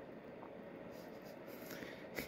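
Faint room tone: a low, even hiss, with a couple of soft ticks near the end.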